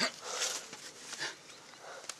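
A person's short breathy vocal sounds, starting with a sharp click and then a burst of breath about half a second in, fainter after.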